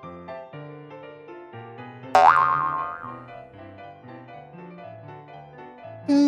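Light children's background music of stepped keyboard notes. About two seconds in, a loud cartoon boing sound effect: a quick upward swoop of pitch that wobbles and dies away within a second.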